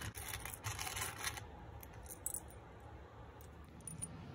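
Loose steel pocket-hole screws clinking and rattling against each other in a plastic screw-kit compartment as a hand stirs through them, busiest in the first second and a half, then a few scattered clicks. Faint.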